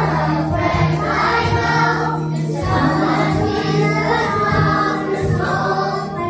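Children's choir singing a Christian children's song in unison over instrumental accompaniment with a steady beat.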